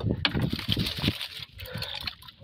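Water sloshing and splashing close by as a bamboo fish trap is handled in the water beside a wooden boat: a run of irregular low splashes.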